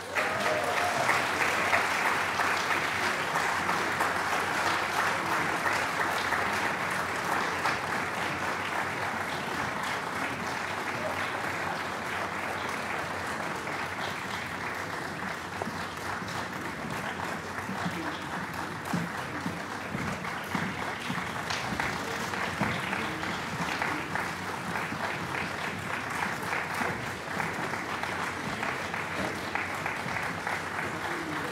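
Audience applauding steadily, loudest at the start and easing off a little over the following seconds.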